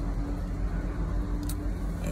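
Car cabin noise from a stationary car with its engine idling: a steady low rumble with a faint hum, and a brief click about one and a half seconds in.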